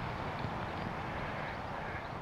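Steady outdoor background noise with a low, fluttering wind rumble on the microphone.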